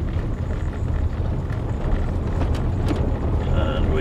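Steady low rumble of a manual Land Rover Discovery's engine and drivetrain, heard from inside the cabin while driving in fifth gear in low range.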